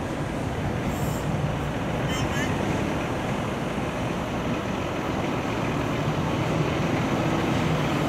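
Steady motor-vehicle noise: an engine running, with a low hum that becomes clearer from about three seconds in.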